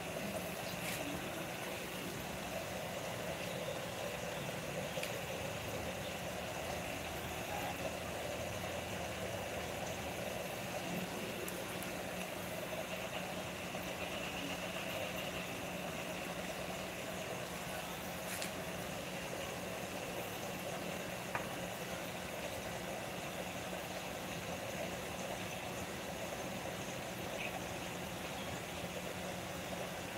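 Steady machine hum with a constant low drone, broken by a few faint clicks.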